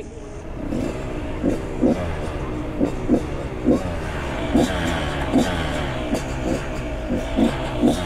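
Two-stroke dirt bike engine idling with an uneven, wavering note; the rider, who keeps fouling spark plugs, suspects he mixes too much oil into the fuel.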